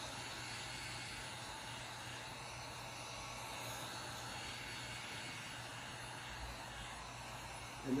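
Handheld electric heat gun running, a steady hiss of blowing hot air, passed over fresh resin to pop the air bubbles in it.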